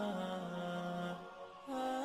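Outro background music: a wordless, chant-like vocal line holding long notes and stepping between pitches. It dips briefly about a second and a half in, then a new, higher note starts.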